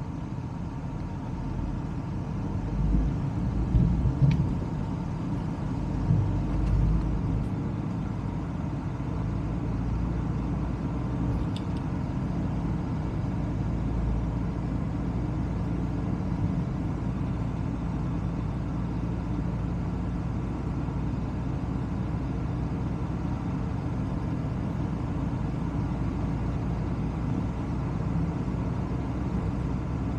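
A car driving along a road, heard from outside the car: a steady low rumble of tyres, engine and wind. It swells louder a few times in the first seven seconds or so.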